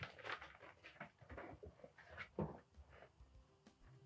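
Faint rustling of paper sheets being handled, a few soft irregular rustles in an otherwise quiet room.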